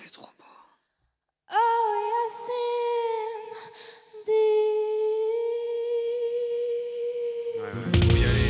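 A woman's unaccompanied voice holding a long, steady wordless note, humming or softly sung, breaking once about halfway and picking the note straight back up. Near the end a loud, deep whoosh cuts in over it.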